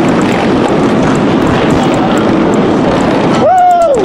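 Dense, steady engine noise from a large group of motorcycles riding past in traffic. About three and a half seconds in, a siren cuts in, holding a high tone and then falling.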